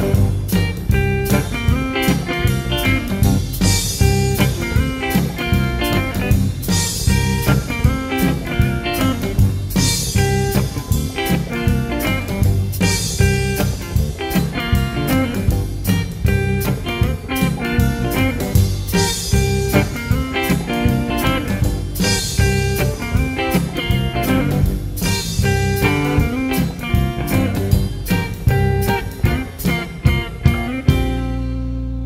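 Live blues-rock band playing an instrumental passage with no singing: electric guitar over bass and drums, with a cymbal crash about every three seconds.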